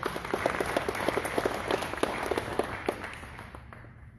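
A small congregation applauding: a round of hand claps that thins out and dies away near the end.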